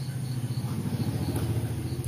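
A low, steady motor-like hum that pulses quickly and grows slightly louder, with a faint high chirp repeating in an even rhythm, about five times a second, like a cricket.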